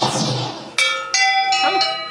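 Bells ringing in a jangle of many pitches: a sudden burst at the start, then fresh strikes about three-quarters of a second and just over a second in, each left ringing. It is the wand-shop show's bell effect set off wrongly by an ill-matched wand, more than the single ring that was asked for.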